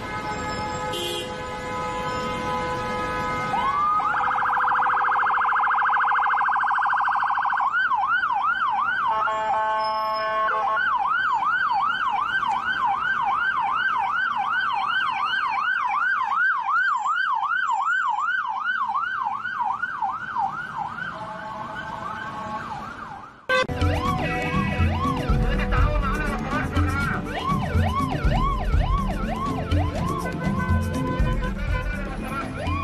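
Ambulance electronic siren in traffic. After a few seconds of steady horn-like tones it winds up into a fast warble, then switches to a yelp sweeping up and down about three times a second, with a short steady horn blast near ten seconds in. About three-quarters of the way through the sound cuts abruptly to music with a low beat under a fainter siren.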